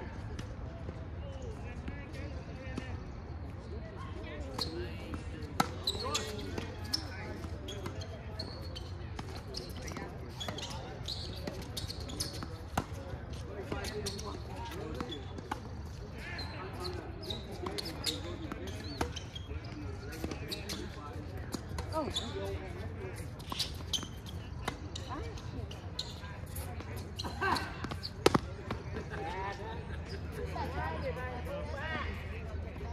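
Tennis balls struck by racquets and bouncing on a hard court during doubles play: a string of sharp pops, the loudest about five seconds in and near the end. Voices talk in the background throughout.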